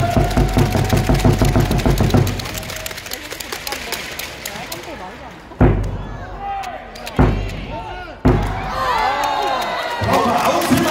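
Arena PA music with a heavy bass beat that cuts off about two seconds in, leaving crowd chatter echoing in a large sports hall. Three sudden loud thuds follow, about a second or more apart, each ringing out in the hall, and crowd voices rise near the end.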